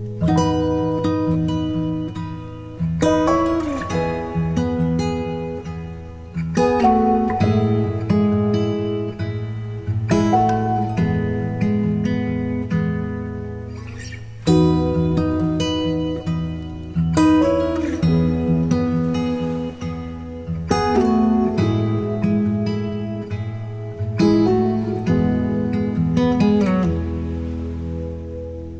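Background music: an acoustic guitar picking chords, a new chord struck about every three to four seconds and left to ring out over low sustained notes.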